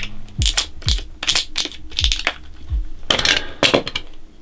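Handling of a padded camera insert bag and camera: irregular clicks, knocks and soft thumps as the padded dividers are pulled out, with a longer scraping rip about three seconds in.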